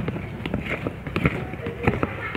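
Silicone spatula stirring a thin blue liquid in a plastic cup, with irregular quick clicks and taps as it knocks and scrapes against the cup.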